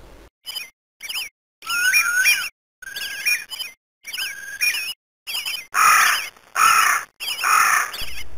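Bird calls in a run of about a dozen short calls with dead silence between them. Clear whistled notes that jump up and down in pitch give way to harsher squawks in the last two seconds.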